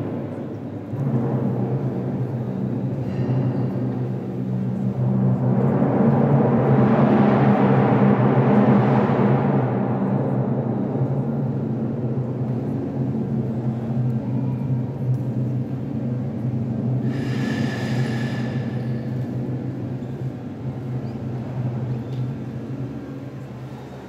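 Procession band playing a funeral march: held low chords with a drum roll that swells to a peak about six to nine seconds in, then the music slowly dies away toward the end.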